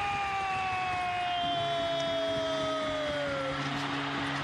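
Arena goal horn sounding for a goal: one long blast whose pitch sinks slowly. A second, lower steady tone joins about a second and a half in.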